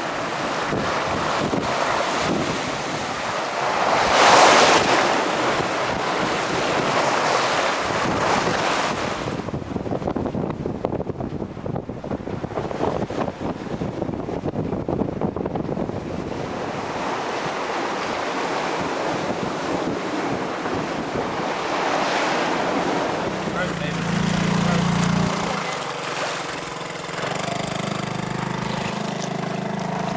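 Wind buffeting the microphone and the sea rushing along the hull of a sailing yacht under sail in a fresh breeze of about 18 knots, with a louder surge about four seconds in. In the last seconds a low, steady engine hum comes in.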